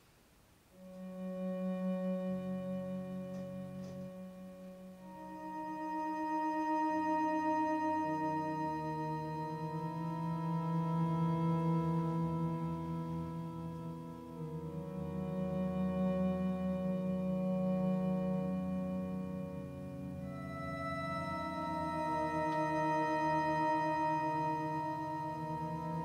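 Theremin played through a live looping setup: slow, sustained electronic tones with a slight waver, several stacked at once into chords that change every few seconds. It begins about a second in and swells and eases in waves.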